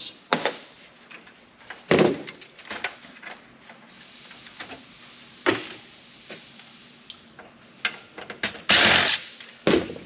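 Scattered clicks and knocks of metal parts and tools being handled on a steel desktop PC chassis during teardown, with a short louder rush of noise near the end.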